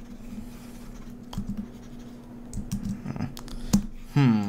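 Scattered light clicks and taps of a computer mouse and keyboard in a few short clusters, the sharpest click near the end, over a steady low hum.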